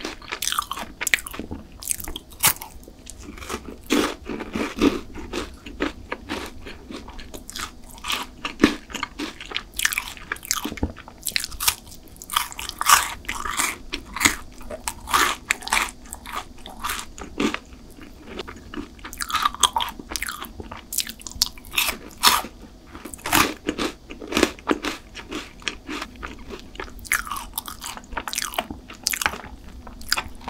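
Close-miked biting and chewing of crunchy chocolate snacks, a chocolate bar among them: many sharp, crisp crunches in quick clusters with softer chewing between.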